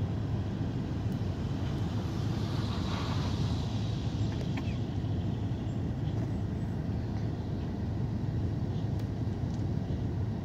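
Bus engine idling while the bus stands still, a steady low rumble heard from inside the cabin. Traffic noise rises briefly about three seconds in.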